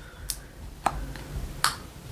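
Four short, sharp plastic clicks, the loudest about one and a half seconds in, from a shower gel bottle's cap being worked open.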